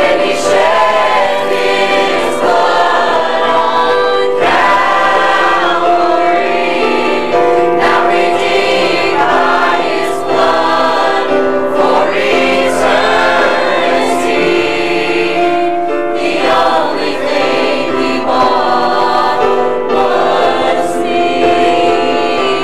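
Mixed church choir of men's and women's voices singing a gospel song.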